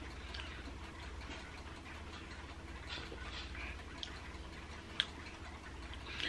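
Quiet room tone with a steady low hum and a few faint clicks, the sharpest about five seconds in.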